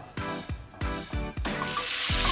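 Background music with a steady beat. About one and a half seconds in, a steady sizzle starts as raw beef mince goes into hot olive oil in a frying pan.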